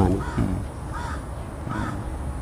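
A crow cawing, two short calls about a second apart.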